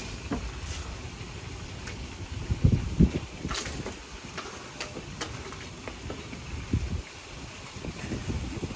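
Wind buffeting the microphone: an irregular low rumble in gusts, strongest about three seconds in, with a few light clicks over it.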